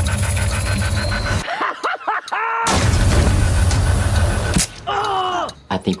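Film trailer soundtrack: dense, loud music and effects with a heavy low rumble, broken twice by a short voiced sound, about two seconds in and again near the end.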